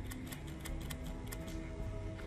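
Cartoon soundtrack: low held music notes under a run of short, sharp clicks as a finger presses the buttons of a handheld gadget.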